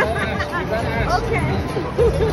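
Casino floor din: overlapping crowd chatter mixed with slot machine music and electronic jingles, as a slot machine's free-game bonus round finishes.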